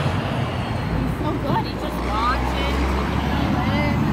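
Steady road traffic noise, with a deeper rumble of a vehicle going by from about one to three seconds in.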